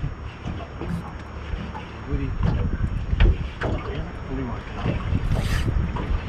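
Wind buffeting the microphone on a small boat: a steady low rumble, with a few sharp knocks in the middle, the loudest a little past three seconds in, and brief muffled voices.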